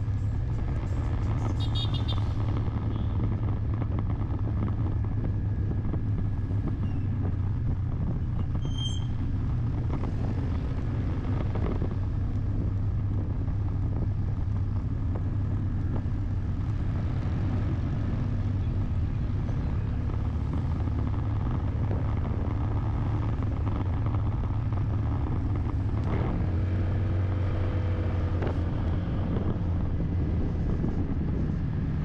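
Steady engine drone and road noise from a vehicle driving along a town road, with a brief high-pitched tone about nine seconds in and faint gliding tones near the end.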